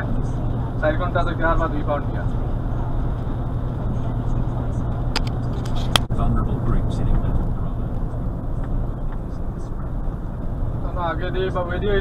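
Steady low hum of a lorry's engine and road noise heard inside the cab, with brief speech about a second in and near the end. Sharp clicks about five and six seconds in, where the recording jumps.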